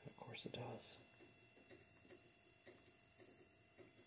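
Near silence: room tone with a faint steady high whine, after a short quiet spoken remark near the start.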